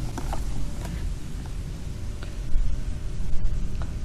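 Low, uneven rumble with a few faint clicks: handling noise and outdoor background on the microphone while the power station is held up close.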